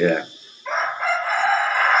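A single long bird call, about a second and a half, that starts suddenly about two-thirds of a second in and runs on under the voice that resumes at the end.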